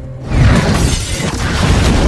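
Movie sound effect of a grenade explosion indoors: a sudden blast about a third of a second in, with shattering glass and a rumble that carries on, over music.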